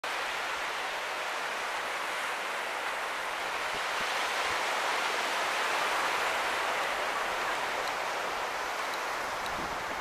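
Ocean surf breaking and washing up the beach: a steady rushing hiss that swells a little in the middle.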